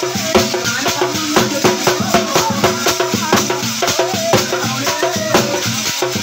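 Live folk devotional music led by hand-held brass cymbals and jingle clusters shaken and struck in a steady rhythm, with a melody line underneath.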